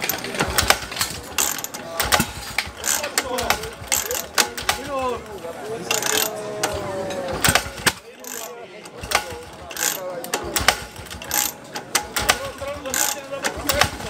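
Irregular clattering and knocking of fire hoses and metal hose couplings being handled and set down, as a firefighting team lays out its equipment around a portable fire pump that is not yet running.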